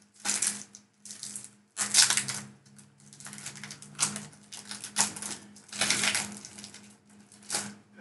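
A foil booster-pack wrapper crinkling and rustling in the hands as a Pokémon TCG booster pack is handled, in a series of short, sharp bursts.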